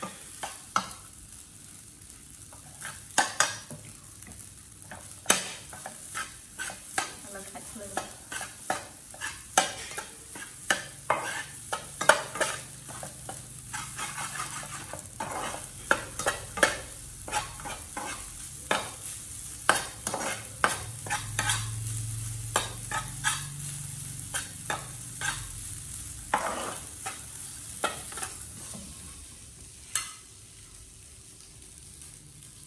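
Rice frying in a pan on a portable gas stove, sizzling steadily, while a metal spatula stirs it, scraping and knocking sharply against the pan about once or twice a second.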